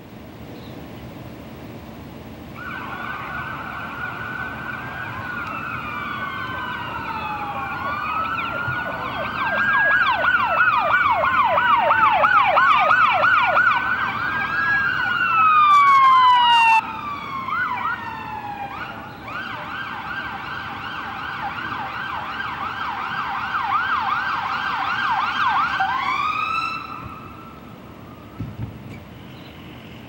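Several emergency-vehicle sirens overlapping as the vehicles arrive, mixing a slow rising-and-falling wail with a rapid yelp. They start a few seconds in, are loudest in the middle, and wind down and cut off a few seconds before the end.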